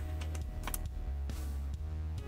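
A few small, sharp clicks of a metal screw being worked into a hole in a plastic LCD housing, over soft background music.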